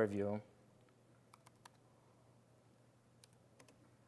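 A handful of faint keystrokes on a computer keyboard, scattered irregularly across a couple of seconds as code is typed.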